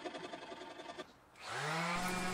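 An electric orbital sander starting up about halfway through, its motor pitch rising and then settling into a steady hum, used to smooth a hand-carved guitar neck-to-body joint. Before it, a faint sound of hand work on the wood.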